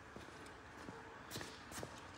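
Faint footsteps on a concrete floor: a few soft, separate taps over a low background hiss.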